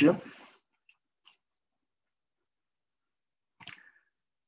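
A man's spoken sentence trails off at the start, then near silence, broken only by two faint ticks about a second in and a brief faint sound near the end.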